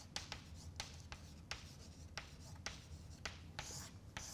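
Chalk writing on a blackboard: a faint, irregular string of short taps and scratches, about three a second, as words are chalked up.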